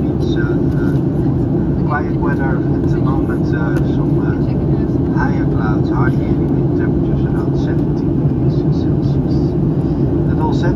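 Steady in-flight cabin noise of a Boeing 737-900 airliner: the even, deep drone of its CFM56 turbofans and the air streaming past the fuselage, with faint talk from other passengers mixed in.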